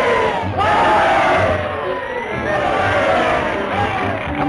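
A crowd of cartoon voices shouting and yelling over one another, with music underneath.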